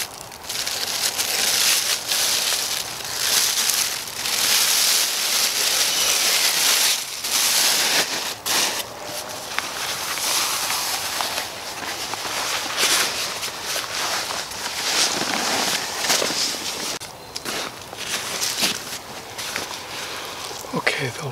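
Plastic bag crinkling and rustling as it is handled close to the microphone, in uneven loud spells with short pauses.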